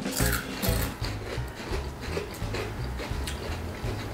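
Crunchy jalapeño veggie straws being bitten and chewed, a few brief crunches over quiet background music.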